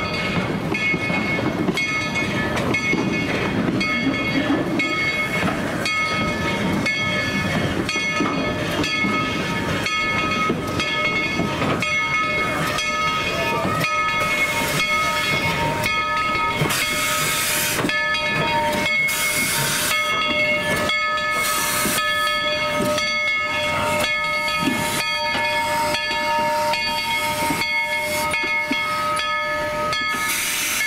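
Tweetsie Railroad No. 190, a narrow-gauge steam locomotive, moving slowly past with its train, its exhaust chuffing at a slow, even beat. Bursts of steam hiss come in the second half, over a thin steady whine.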